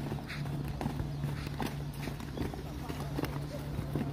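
A group of footballers' feet thudding on the ground in a steady rhythm, about two to three steps a second, as they jog through a warm-up drill, with voices over it.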